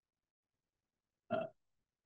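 Near silence, then a single short hesitation sound, "uh", in a man's voice about a second and a quarter in.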